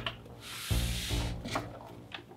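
A rubbing scrape lasting under a second, from a cardboard box being slid out from low down, followed by low bass notes of background music.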